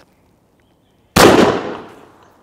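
A single shot from a 12-gauge shotgun firing a 28-gram Gamebore Black Gold No. 7.5 cartridge, a little over a second in, its report dying away over most of a second.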